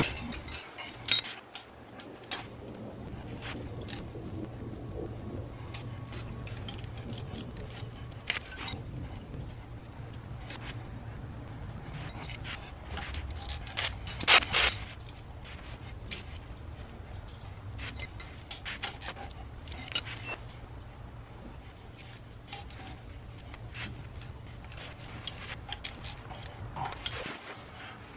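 Scattered small metallic clicks, clinks and scrapes of hand work on an electric golf cart motor's wiring, nuts and terminals being handled, with the loudest cluster of clicks about halfway through. A low steady hum runs underneath.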